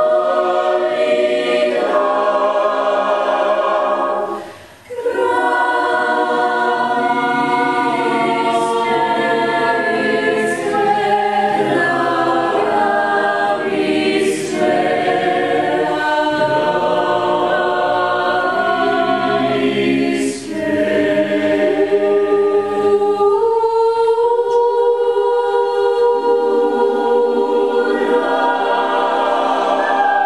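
Mixed choir of men and women singing a cappella in held, sustained chords, with a brief break about four and a half seconds in.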